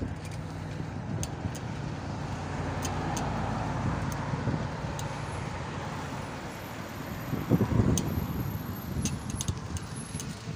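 A car passing on the road: steady engine hum with tyre noise that swells to a peak around the middle and fades, followed by a few seconds of loud, irregular low rumbling near the end.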